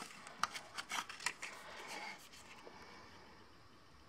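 Small craft scissors snipping through folded double-sided scrapbook paper, cutting two layers at once. A run of quick, short snips comes in the first second and a half, then quieter paper handling.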